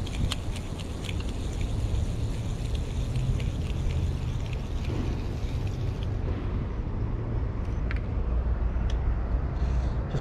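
Spinning reel being wound in, giving faint quick ticks over a steady low rumble; the ticking thins out about six seconds in.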